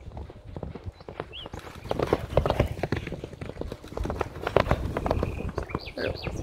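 Hoofbeats of ridden horses galloping on a dry sand track: rapid, irregular thuds that grow louder as the horses close in and pass near the end.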